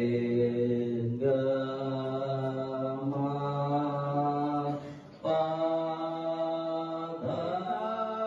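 A man singing into a handheld microphone in slow, chant-like phrases, holding long steady notes. The phrases break about a second in, around the middle and again near the end, sliding up into the last note.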